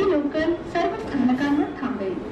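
A person's voice with a pitch that glides up and down and holds notes, somewhere between speaking and singing, over low, steady background noise.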